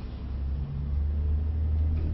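A deep, steady low rumble that grows stronger about half a second in.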